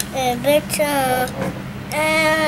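A young child's high-pitched voice making drawn-out sounds with sliding pitch, broken by short pauses, over a steady low hum.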